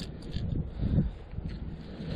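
Wind buffeting the microphone: low, gusty rumble that swells briefly about half a second in and again about a second in.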